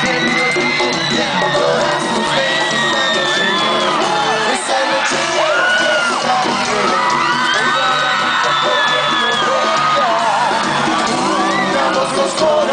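Live pop concert music heard from within the audience: a male singer with his band, with long, high-pitched screams and whoops from the crowd held over the music.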